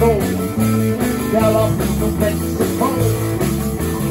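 Live rock band playing a rock-and-roll blues number: electric guitars over bass and a drum kit, steady and loud.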